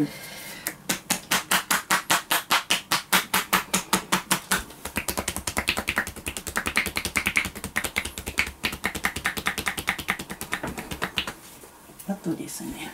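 Hands striking a person's clothed shoulders and upper back in rapid percussive massage (tapotement). It starts about a second in at about eight strikes a second, grows faster and denser about five seconds in, and stops about a second before the end.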